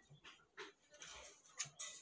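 A man's breath, quiet short puffs close to the microphone, several in a row.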